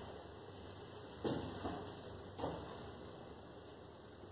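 A quiet room with a few soft thuds and rustles, about a second in and again a little past halfway, as a door is pushed open and someone steps through it.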